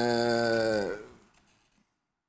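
A man's drawn-out hesitation filler 'eee', held on one steady pitch for about a second and dropping slightly as it fades out.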